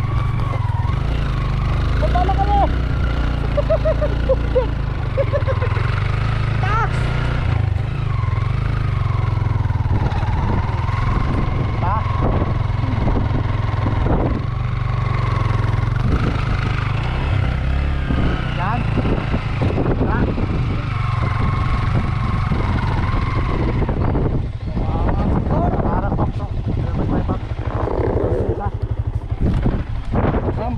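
Yamaha Sniper underbone motorcycle running as it is ridden off-road, with a heavy low rumble of wind on the helmet-mounted microphone.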